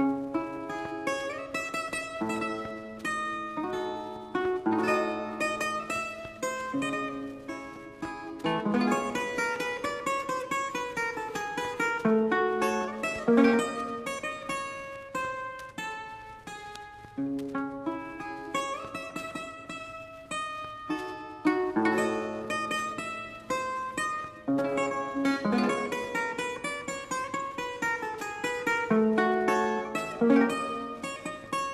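Seven-string guitar played solo: a plucked melody with quick runs and ringing chords, loud and soft by turns.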